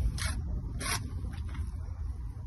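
Two short, gritty scrapes a little over half a second apart, over a steady low rumble.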